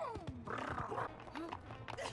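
Anime soundtrack playing quietly: background music with a cartoon three-headed dog creature's gliding calls.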